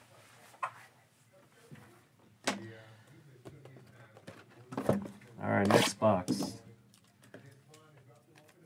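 A shrink-wrapped cardboard trading-card hobby box being handled. There is a sharp knock about two and a half seconds in, then a louder second or so of rustling and handling noise past the middle as the box is picked up and set down.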